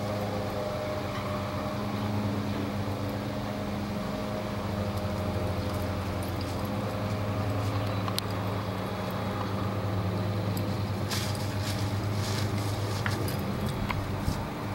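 Steady low machine hum, even and unchanging, with a few faint clicks in the last few seconds.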